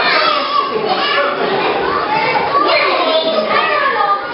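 Many young children talking and calling out at once, a steady babble of overlapping voices with adults speaking among them.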